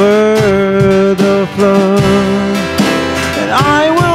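Live worship song: a man sings long held notes over acoustic guitar.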